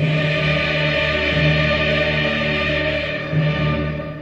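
Choir singing a Kyrie, coming in suddenly loud at the start and holding full sustained chords, easing back at the end.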